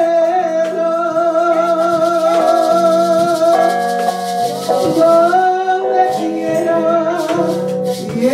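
Woman singing a hymn into a microphone, holding long sustained notes, with a pair of maracas shaken along, their rattling clearest in the second half.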